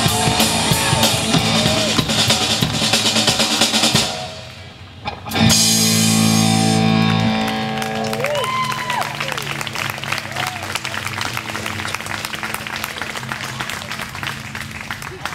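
Live rock band (electric guitars, bass guitar and drum kit) playing the end of a song: full playing with singing, a brief drop about four seconds in, then a loud final chord struck with the drums that rings on and slowly fades under a wash of cymbals.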